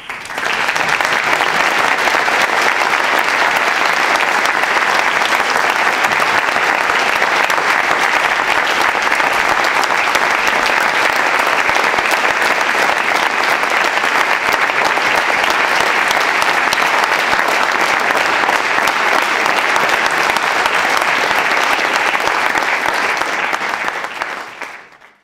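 Lecture-hall audience applauding steadily for the whole stretch, a dense, even clapping that starts sharply and fades just after the end.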